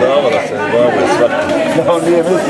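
Several men talking over one another in loud chatter.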